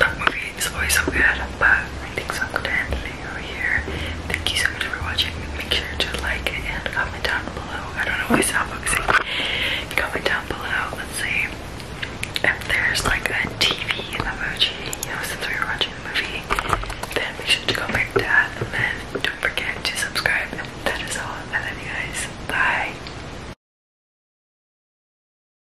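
A young woman whispering close to the microphone, until the sound cuts off suddenly near the end.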